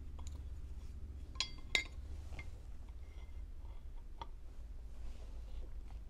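Light metallic clicks and clinks of a piston, steel piston pin and connecting rod being handled and fitted together, two sharper clicks about a second and a half in, over a low steady hum.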